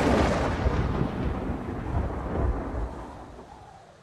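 A rumble of thunder rolling and slowly dying away, with a small swell about halfway through.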